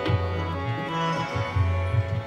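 Tabla playing, with deep, ringing bass-drum strokes that bend in pitch, mixed with sharp treble-drum strokes. Under it, held harmonium notes carry a steady melody.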